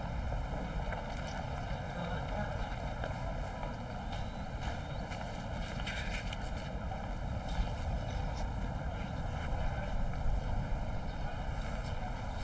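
Steady low outdoor background rumble with a few faint light clicks and rustles.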